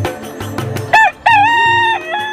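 A rooster crows once over background music with a steady drumbeat. The crow starts about a second in as a short note followed by a long held one, and it is louder than the music.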